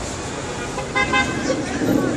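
A car horn gives a brief honk about a second in, over a steady background of traffic and street noise.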